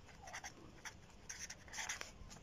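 Faint scratching of a pen writing on a sheet of paper, in a few short strokes.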